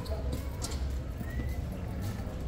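Footsteps on a paved street over a low rumble of street noise, with faint voices in the background.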